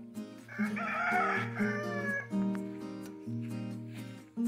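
Background music, with a rooster crowing once for nearly two seconds about half a second in.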